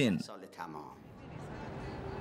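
A man's voice trails off with a falling pitch right at the start. Then a steady wash of outdoor street noise fades up, growing louder from about a second in.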